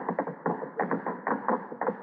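Sound-effect footsteps of several men hurrying away: a quick, irregular run of knocks, in the narrow, dull sound of a 1950 radio broadcast recording.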